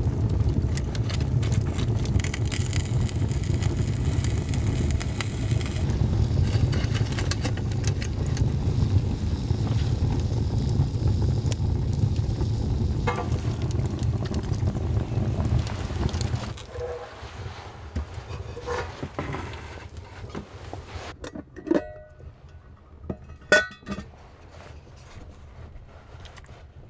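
Wood fire burning in a stone fireplace, a steady low rumble with crackling, for about the first sixteen seconds. Then it is much quieter, with a few sharp metal clinks from handling a tin can and a metal mess tin near the end.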